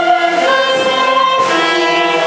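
A choir of voices singing held chords, the notes shifting about every half second to a second.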